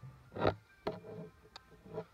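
Handling noise: a few short, soft clicks and taps as a hard plastic graded-card slab is turned in the fingers close to the microphone.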